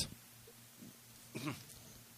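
A pause of near silence, broken by one brief, faint vocal sound about one and a half seconds in.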